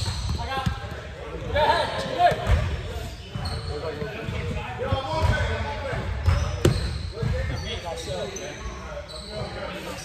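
Basketball bouncing on a gym floor, with repeated sharp knocks that echo around the large hall, and players' voices in between.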